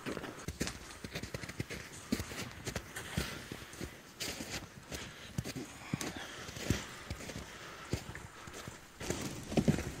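Footsteps on a packed snow trail, an uneven run of short footfalls, with a loaded toboggan sliding along behind on its tow line.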